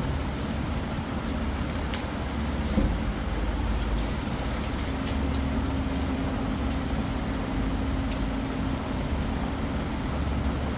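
Steady background noise with a low hum and rumble. A faint steady tone comes in about five seconds in, along with a few faint clicks.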